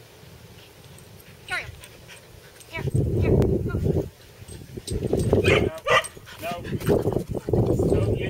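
A dog barking and yipping several times, excited while running an agility course, with loud low rumbling noise from about three seconds in.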